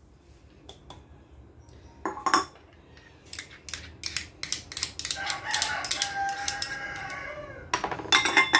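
Sugar poured into a frying pan of sliced almonds, then a spoon clinking and scraping against a small ceramic dish as cream is scooped into the pan, with many small clicks. About five seconds in, a long, steady high call lasting over two seconds sounds above the clinks.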